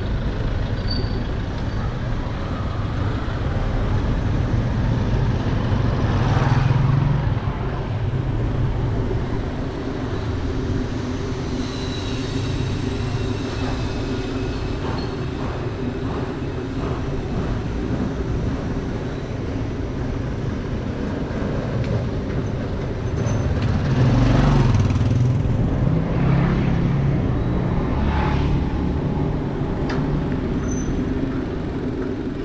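Street traffic: a steady engine hum with motor vehicles passing close by, swelling louder about six seconds in and again from about 24 to 28 seconds.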